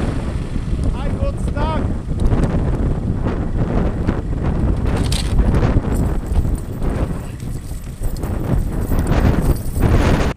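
Wind buffeting the microphone, with scattered clinks and rattles of metal snow chains being handled at a car's front wheel.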